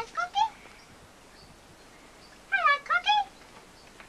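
A caged cockatoo giving short, high-pitched calls that rise and fall, in two brief bursts: one at the start and one about two and a half seconds in.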